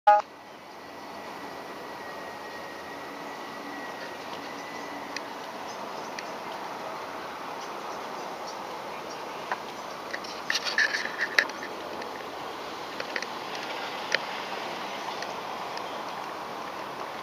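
Steady outdoor street noise, even and without any clear engine or voice, with a short cluster of clicks and rattles about ten and a half seconds in.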